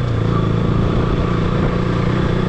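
Motorcycle engine running steadily at low road speed. Its note drops slightly at the start, then holds.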